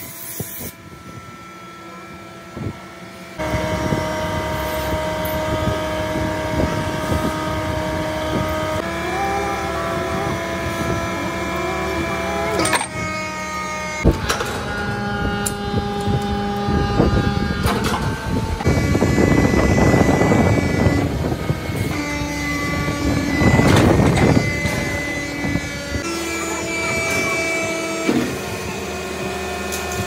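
Metal die-casting machine running in a workshop, a steady mechanical hum that shifts pitch in steps, with two loud hissing blasts past the middle.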